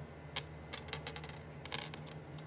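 Small plastic Lego pieces clicking and clattering against each other as they are handled: a single click about a third of a second in, then quick runs of clicks around the middle and near the end.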